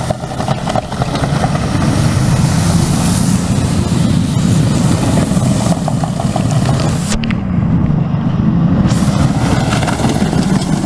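Car engine running loudly and steadily, rising briefly in pitch about seven seconds in.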